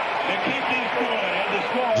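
Steady hubbub of a large stadium crowd, a dense wash of many voices with faint talk in it.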